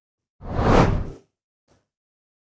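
A whoosh sound effect marking an animated screen transition: one swell of noise that builds and fades away within under a second, followed by a faint short tick.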